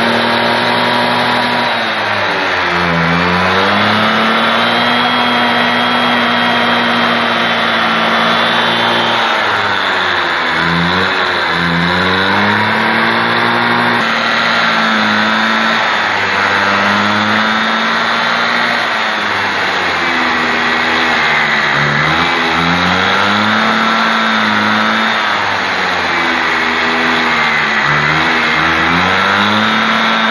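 A Piaggio Ciao moped's small two-stroke engine runs with its newly fitted Boxy/Rapido variator. It holds a steady speed, and its pitch sags and climbs back four times, roughly every seven to ten seconds.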